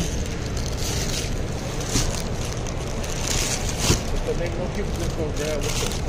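Steady background noise of a busy store with faint distant voices. Around four seconds in come a short plastic rustle and a knock as a bag of limes is handled.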